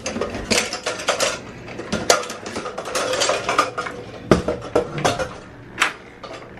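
Small red metal hurricane lanterns, with glass globes, clinking and rattling against each other and their wire handles as they are picked up and carried. The knocks come in a continual clatter, with a few louder clanks about two seconds in, past four seconds and near the end.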